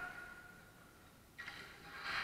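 Faint, distant sounds of a ball hockey game in play: a high ring fading out at the start and a sharp knock about one and a half seconds in.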